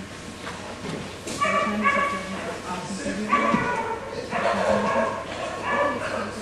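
A dog yipping and whining in high-pitched calls, in several short bouts.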